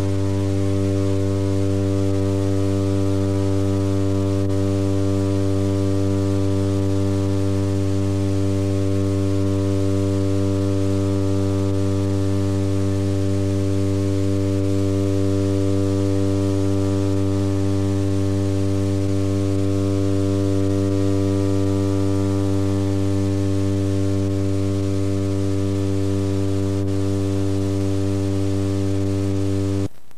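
A steady amplified drone of several held low tones from the stage amplifiers, unchanging throughout and cut off abruptly at the very end.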